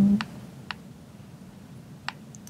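Two light clicks on a laptop, about half a second apart, over quiet room tone; the tail of a drawn-out spoken 'uh' ends just as they begin.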